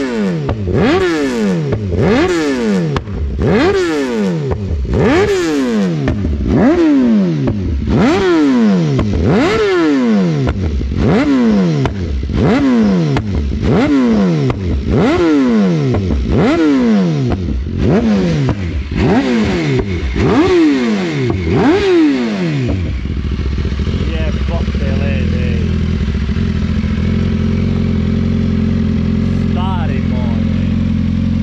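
BMW S 1000RR inline-four engine with an Akrapovič exhaust being blipped hard, roughly once a second. Each rev shoots up and falls away, and the speaker calls these blips detonations. About 23 seconds in the blipping stops and the engine settles into a steady idle.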